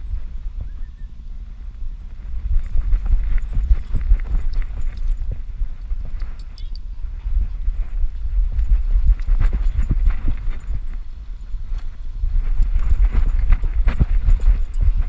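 A dog's running footfalls and the jostling of a camera harness strapped to its back: rapid, irregular thuds and rustles, with short quieter spells about a second in and around seven and eleven seconds.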